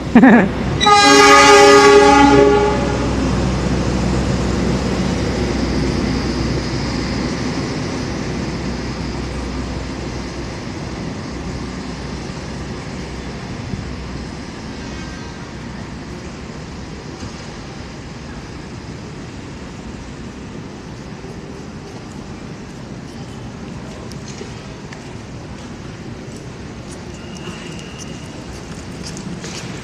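A train horn sounds one loud blast of about a second and a half, starting about a second in. A passenger train set then rolls past, its running noise fading slowly as it moves away.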